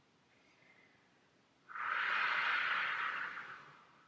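A person's single long breath out, unvoiced, starting a little under two seconds in, swelling quickly and fading away over about two seconds, after a stretch of near silence.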